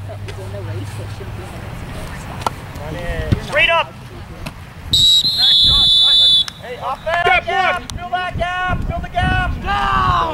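Referee's whistle: one long, shrill blast about five seconds in, the loudest sound, ending the play as the ball carrier is tackled. Then voices shouting in quick repeated calls until the end.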